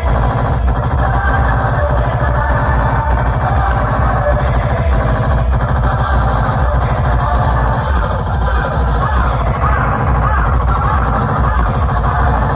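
Electronic dance music with a heavy, steady bass beat, played loud through a large stack of loudspeaker cabinets.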